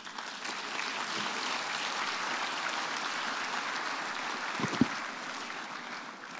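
Audience applauding in a large hall, steady clapping that starts as the speech ends and fades toward the end.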